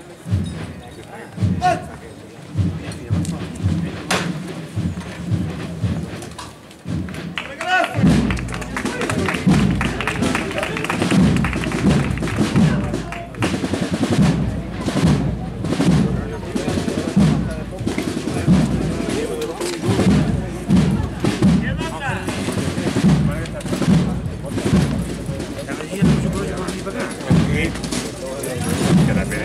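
Holy Week procession band music with a steady, slow drumbeat, growing much louder and fuller about eight seconds in, over crowd voices.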